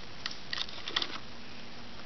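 Small plastic clicks and light rustling as jumper wire connectors are handled and pushed onto a circuit board's header pins: several soft clicks in the first second or so, then only a steady faint background hum.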